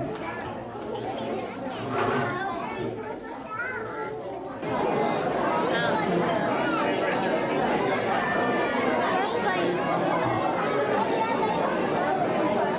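Chatter of many people talking at once in a large hall. It becomes suddenly louder and busier about four and a half seconds in.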